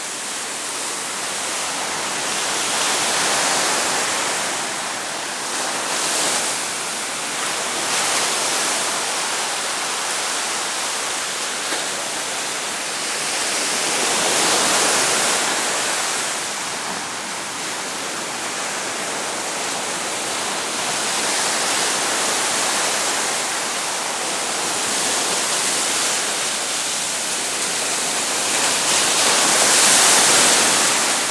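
Ocean surf breaking and washing up a sandy beach: a continuous rushing that swells and eases every few seconds as the waves come in.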